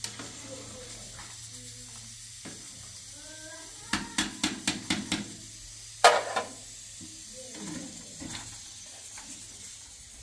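Metal ladle working in a cooking pot: a quick run of about six knocks against the pot about four seconds in, then one louder clank about two seconds later, over a steady low hum.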